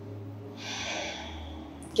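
One deep breath through the nose and mouth, soft and airy. It starts about half a second in and lasts about a second and a half.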